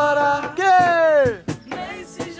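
A man singing to a strummed acoustic guitar. About half a second in, a long sung note slides down in pitch and fades, and guitar strums follow.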